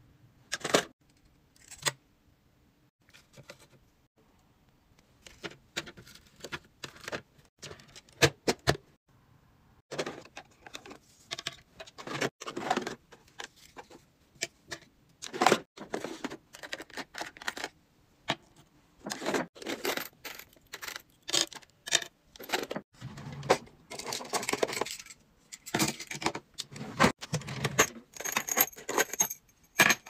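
Metal keychain clasps and split rings jangling and clinking, with small plastic items clicking as they are handled and laid out. The clinks come in irregular clusters, with a quieter pause a few seconds in.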